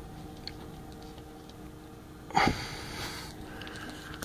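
A faint steady hum throughout, and about two and a half seconds in a single short breathy voice sound from the person holding the meter, such as a grunt or exhale.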